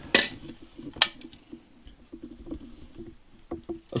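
Rocker paddle of a dimmer wall switch in an outdoor electrical box clicked twice, about a second apart, followed by faint handling noise and small ticks.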